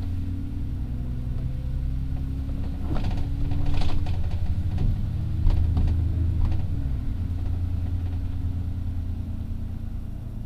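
Alexander Dennis Enviro400 double-decker bus driving along, heard from inside: a steady low engine drone with rattles and knocks from the bodywork, loudest at about four and five and a half seconds in.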